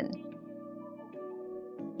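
Soft ambient background music: sustained held notes that shift to a new chord a little past halfway.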